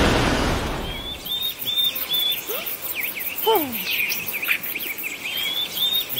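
A loud rushing noise fades out over the first second, then birdsong sound effect: repeated short high chirps and whistles, with one falling whistle about three and a half seconds in.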